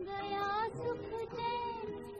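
A woman singing a slow vintage Hindi film song, holding long notes with a wavering vibrato over light instrumental accompaniment.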